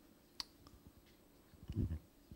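A sharp click about half a second in and a fainter click after it, then a short, louder low-pitched sound near the end.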